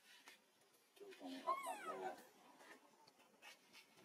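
Infant macaque giving one crying call about a second in, lasting about a second and falling in pitch.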